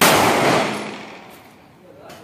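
A single pistol shot fired on a shooting range: a sharp crack right at the start, followed by a ringing echo that fades over about a second and a half.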